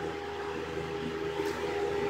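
Steady low background hum with hiss, unchanging, with no distinct events.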